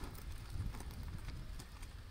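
Outdoor field ambience: scattered, irregular faint clicks and ticks over a low rumble.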